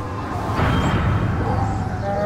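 Bear growl sound effect: a rough, noisy growl that swells about half a second in and carries on to the end.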